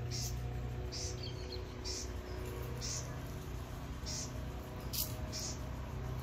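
A small bird chirping: short high chirps repeated roughly once a second, over a low steady hum.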